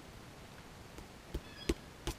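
Two sharp metallic clicks near the end, about a third of a second apart, the second louder and briefly ringing, from a small metal hand tool used to open a tin can. The rest is a faint, steady background.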